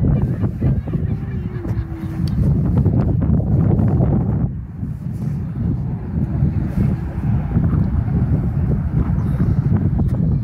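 Wind buffeting the microphone outdoors: a heavy, gusty low rumble that eases for a moment about halfway through.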